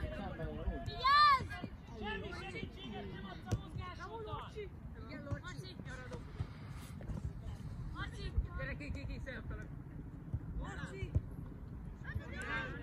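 Voices calling and shouting across an outdoor youth football pitch, with one loud, high-pitched shout about a second in and a few short knocks scattered through.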